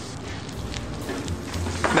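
Background music over a steady sizzling hiss from a pan of mushrooms and tomatoes frying on low heat, with a few faint light knocks.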